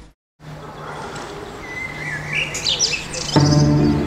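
After a moment of silence, small birds chirp over faint outdoor ambience. About three seconds in, bowed strings begin playing.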